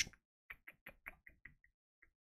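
A faint run of about seven short, evenly spaced clicks, roughly six a second, from a computer mouse's scroll wheel being turned, with one more click at the end.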